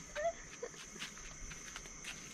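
Faint outdoor ambience dominated by a steady high-pitched insect drone, with a short rising chirp about a quarter second in and a few faint taps.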